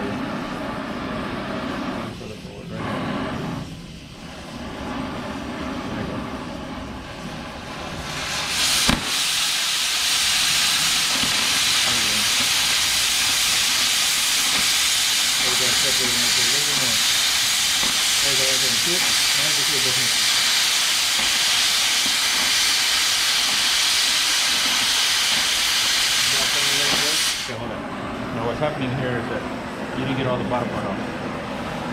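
Oxy-fuel cutting torch cutting steel auger flighting. The preheat flame hisses for about the first eight seconds. Then, with a sharp pop, the cutting-oxygen jet opens into a much louder, steady hiss as it cuts through the steel, and it shuts off abruptly near the end, leaving the quieter flame.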